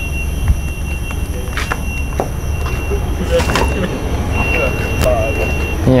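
Volvo coach bus's diesel engine idling with a steady low rumble, a thin high whine running over it, and a few sharp knocks.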